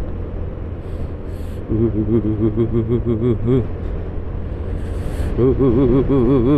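A Honda Scoopy scooter running steadily on the move, with a constant low engine and wind rumble. Over it, the rider's voice hums a wavering, wobbling tone twice: from about two seconds in to past the middle, and again from near the end.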